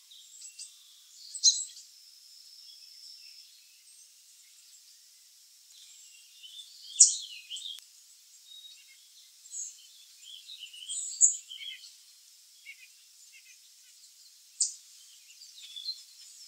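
Birds chirping: a handful of sharp, high calls spread through, the loudest about seven seconds in, with fainter twittering between and a short held high note about two seconds in.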